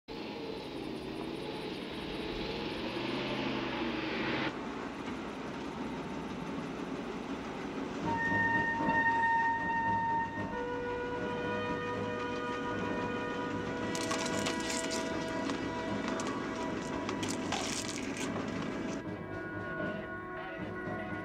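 Film soundtrack: a pickup truck driving, with engine and road noise, joined from about eight seconds in by held, horn-like musical chords that shift pitch a few times.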